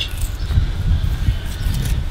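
An uneven low rumble of outdoor background noise, with a faint steady high whine above it.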